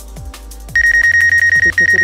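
DJI Go app obstacle-proximity alarm for a DJI Mavic Pro: a loud, high, rapidly pulsing beep. It starts about three-quarters of a second in and runs on with one short break, a sign that the drone's forward sensors have picked up the grass just ahead. Background music with a beat plays under it.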